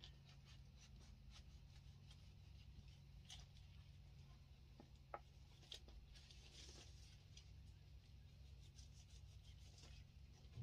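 Faint scraping and small clicks of a kitchen knife cutting through ripe jackfruit flesh, over a low steady hum.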